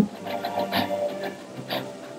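Marching band brass playing held, stacked chords, with a loud drum hit right at the start and a couple of sharper accents partway through.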